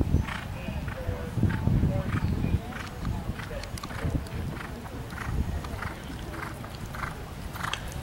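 A horse's hooves cantering over a sand arena, a steady beat about twice a second, over a low rumble.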